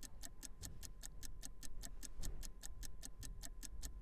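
Clock-style ticking countdown sound effect, fairly quiet and evenly paced at about five ticks a second.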